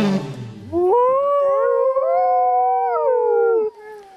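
The end of a saxophone music passage dies away, then from about a second in several overlapping canine howls rise, hold and fall away together near the end.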